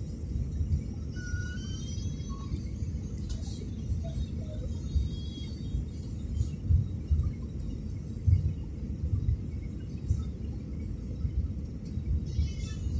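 Airliner cabin noise on final approach: a steady low rumble of the engines and airflow heard from inside the cabin, swelling and easing unevenly. Faint high wavering tones sound briefly in the first half.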